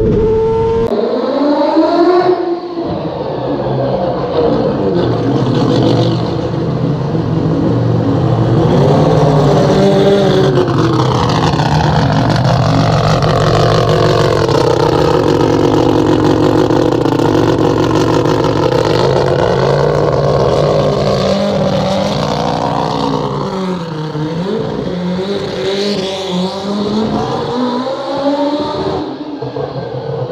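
Four-rotor rotary engine of a turbocharged Mazda RX-7 race car revving and running hard. Its pitch swings up and down in the first few seconds, then falls, holds for several seconds, and climbs again, with more short rev swings near the end.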